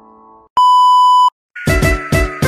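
The last of a piano chord dies away, then one loud, steady electronic beep lasting under a second. After a short gap, electronic music with a beat and a falling whine starts near the end.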